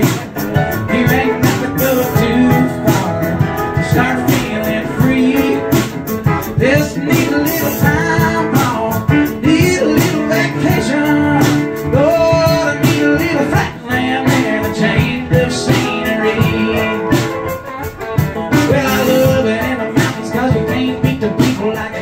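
Live country song: a man singing over a Telecaster-style electric guitar, with a steady beat.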